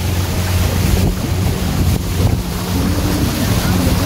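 Small motorboat's engine running steadily under way, with wind buffeting the microphone and water rushing past the hull.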